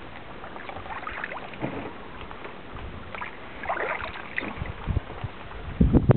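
Water splashing and dripping from paddle strokes beside a small paddled boat, in irregular bursts, with a few dull knocks near the end.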